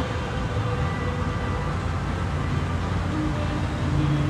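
Steady low rumble of motor vehicle noise, an even hum with no sudden events.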